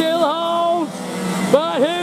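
A man's voice calling the race, drawn-out and excited, with the two-stroke engines of 125cc racing karts running on the circuit behind.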